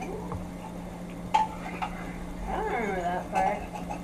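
A man eating spaghetti: a fork clinks once against a ceramic plate about a second in, and a short, muffled mumble through a full mouth follows near the end.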